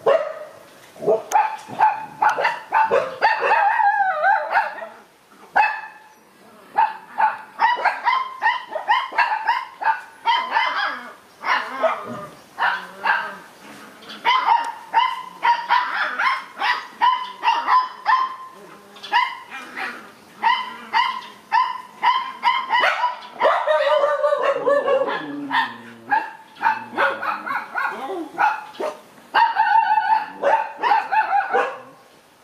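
Dog barking over and over in quick, high-pitched barks, several a second, with brief pauses about five seconds in and again around twelve seconds.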